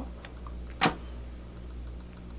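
A single sharp click a little under a second in, over a steady low hum.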